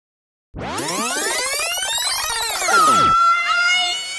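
Synthesized transition sound effect: a dense cluster of tones sweeps up in pitch and back down over about two and a half seconds, starting half a second in. Near the end it gives way to a held, slightly wavering high note with music.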